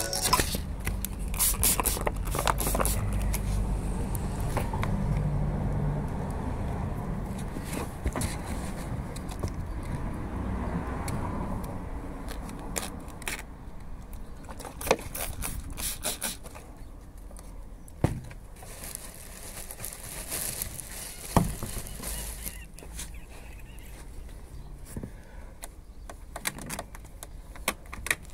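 Scattered clicks and crinkles of wet paint protection film being handled and pressed onto a car's front splitter, over a low rumble that fades after about twelve seconds.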